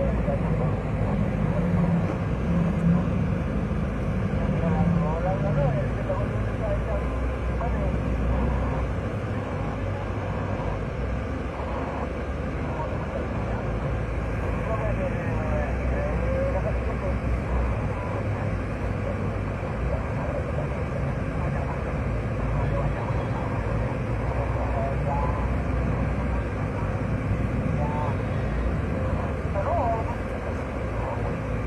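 Steady engine and road drone heard from inside the cabin of a moving passenger van.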